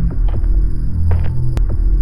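Opening theme music of a TV programme: a deep bass that swells and pulses about every second and a half, with a few short sharp clicks over it.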